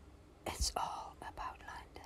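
A person whispering a few quiet syllables over a faint steady hiss, starting about half a second in and lasting about a second and a half.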